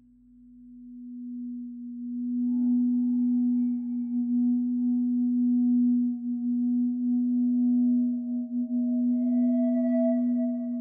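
Mutable Instruments modular synthesizer holding a steady low drone tone that swells in from near silence over the first two seconds or so. Fainter, higher sustained tones join about two and a half seconds in.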